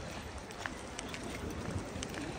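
Street ambience of a busy pedestrian square: a low steady rumble with faint voices of passers-by, and scattered footsteps on icy pavement.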